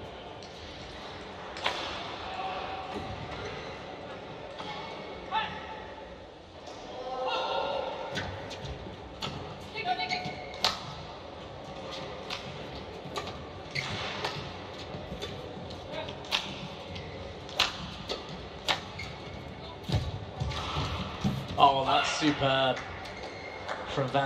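Badminton rally in a large hall: a string of sharp racket strikes on the shuttlecock, less than a second apart. A thud comes about twenty seconds in, followed by voices calling out as the point ends.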